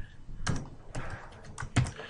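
Computer keyboard keys being typed: a handful of separate, irregularly spaced keystrokes.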